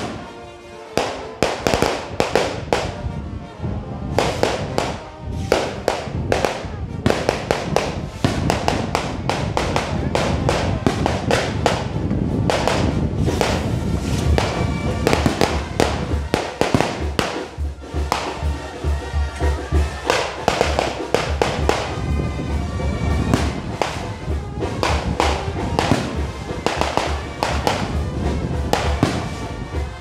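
Festival cohetes (firecrackers) going off in a rapid, irregular string of sharp bangs, densest in the first half and thinning later. Music with a steady low beat plays underneath, coming forward in the second half.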